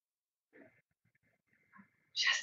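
Near silence: room tone, with a faint short sound about half a second in and another near the end.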